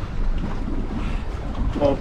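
Wind buffeting the microphone on an open boat at sea: a steady, rough low rumble. A man's voice breaks in near the end.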